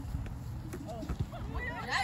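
Faint voices of players talking and calling out across an open field, over a low, uneven rumble with small irregular thumps.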